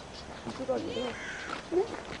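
Indistinct, low-level talking: short snatches of voices without clear words.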